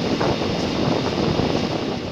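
Steady rushing noise with no clear pitch, from fishing boats burning while fire hoses spray water onto them.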